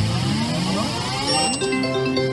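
Konami video slot machine (Wealth of the Orient) playing its electronic free-game sounds: a cluster of rising, sweeping tones while the reels spin. Held chime tones come in during the last half second as the reels stop on a win.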